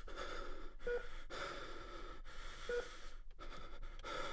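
A hospitalised COVID-19 patient breathing quickly through an oxygen face mask, the air hissing in and out about once a second.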